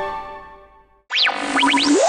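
Intro music with held notes fading out over the first second. After a brief gap comes a cartoon-style sound effect: quick whistling pitch swoops up and down over a low steady tone, turning into a long rising glide near the end.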